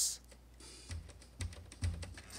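A few soft computer-keyboard keystrokes, spaced about half a second apart, each a click with a dull thud.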